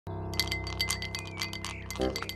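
Film background score: a held low drone with a quick run of tinkling, wind-chime-like strikes that begins a moment in.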